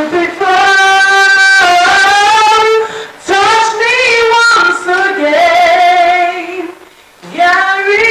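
A woman singing a slow song unaccompanied or over faint backing, holding long notes with a wavering vibrato. There are short breaths between phrases about three seconds in and near seven seconds.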